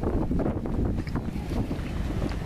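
Wind buffeting a handheld camera's microphone: an uneven low rumble with no speech over it.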